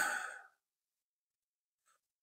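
Mostly near silence, with a man's short breathy exhale, like a sigh, fading out within the first half second.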